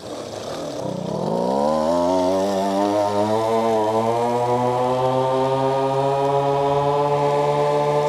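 Stock Go-Ped scooter's small two-stroke engine catching after a push start and running at full throttle. Its note climbs quickly for about a second, then holds and rises slowly as the scooter picks up speed.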